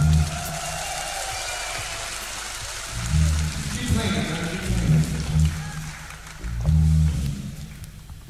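Electric bass guitar playing a short run of separate low notes, after a few seconds of hall noise.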